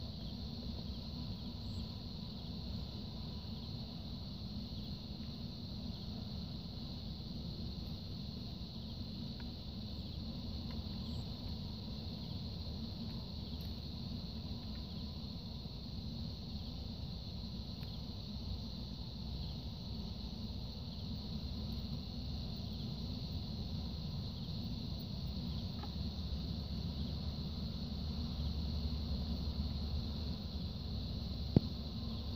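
Field crickets chirping steadily in a high, even trill over a low background rumble, the rumble growing louder near the end.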